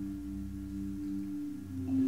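Low notes on a mallet-struck bar instrument ringing on and slowly fading, with a new low note coming in near the end.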